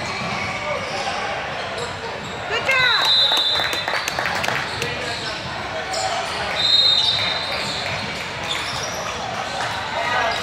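Indoor basketball game on a hardwood court: the ball bouncing, sneakers squeaking, and players' voices echoing in the gym. Short, shrill high tones sound about three seconds in and again near seven seconds.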